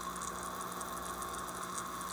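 Aquarium filter running: a steady wash of moving water with faint fine crackle.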